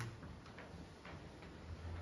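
Quiet room tone with a low steady hum and a few faint, irregular soft clicks.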